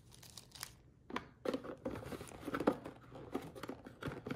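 Plastic packaging crinkling, with irregular small clicks and rustles of plastic items being handled, starting about a second in.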